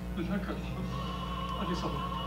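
Soundtrack of an Arabic television serial clip played over room speakers: music and voices, with a note held from about halfway through, over a low steady hum.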